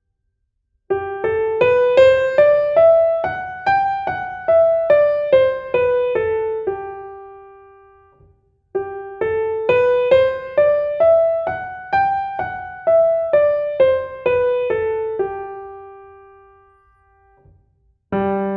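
Digital piano playing a one-octave G major scale with the right hand, single notes stepping up from G to the G an octave higher and back down at an even pace. The scale is played twice, the first time starting about a second in and the second about halfway through, each run ending on a held low G that dies away.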